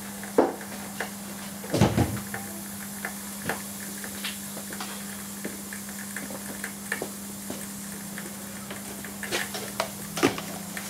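Overcharged alkaline D-cell batteries crackling and popping irregularly as they heat and vent, over a steady hum. The loudest crackles come around two seconds in and near the end.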